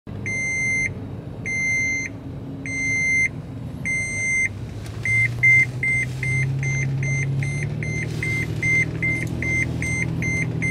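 2007 Toyota FJ Cruiser's seat belt reminder chime going off while the vehicle is moving with the belt unbuckled: four long beeps about a second apart, then a quicker run of short beeps, about three a second. Low engine and road noise runs underneath and grows a little louder about halfway through.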